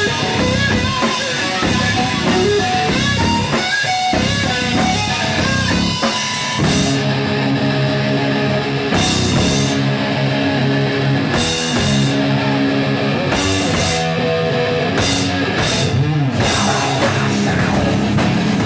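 Hard rock band playing live: distorted electric guitar and bass through amps, with a full drum kit, loud. About seven seconds in, the music shifts into a heavy riff played in short blocks, with the cymbals and top end dropping out between them.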